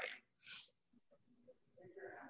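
Near silence on a video call: a word trails off, then a short faint breath-like hiss and a faint murmur near the end.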